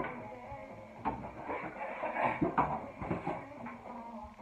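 Cardboard box and packaging rustling and knocking as a round-brush hair dryer is taken out, with music in the background. A sharp knock comes right at the start, and a couple more come near the end.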